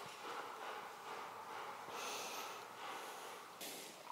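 A dog breathing noisily through a basket muzzle while being handled, with a few louder breaths, the strongest about two seconds in and another just before the end.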